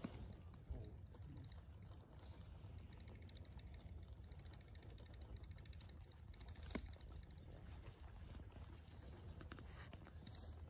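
Near silence: faint outdoor ambience with a steady low rumble and a single soft click about two-thirds of the way through.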